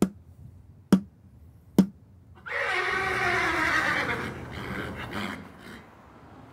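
A hand taps a metal plaque three times, sharp taps just under a second apart. Then a horse whinnies once, a call of about two seconds that falls in pitch.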